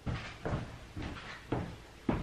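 A sketchbook being handled and set down open on a small wooden table: several dull knocks of the book against the wood, with paper rustling.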